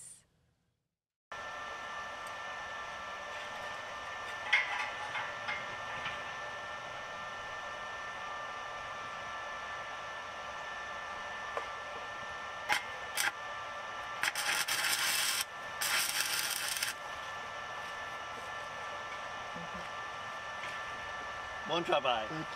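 Stick (arc) welding on a steel barrel: after a second of silence, a steady machine hum runs throughout, with a few clicks as the arc is struck, then two bursts of welding hiss about a second long each.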